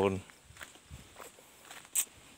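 Faint footsteps on a dry dirt path, with a short sharp click near the end.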